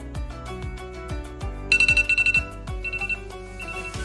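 iPhone alarm going off: a high electronic beep in quick rapid pulses, starting about halfway in and coming back in two shorter bursts near the end, over background music with a steady beat.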